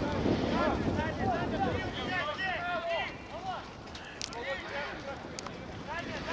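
Distant shouts and calls of several players across the pitch, short bursts of voice coming in two clusters, with wind rumble on the microphone over the first half. A couple of sharp knocks are heard in the second half.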